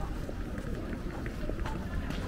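Street ambience of a busy pedestrian shopping street: footsteps on paving with passers-by talking, over a steady low rumble.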